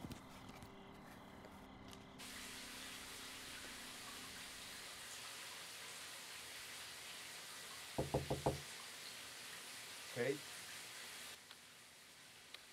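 Four quick knocks on a closed interior door about eight seconds in, followed by a short call in a man's voice.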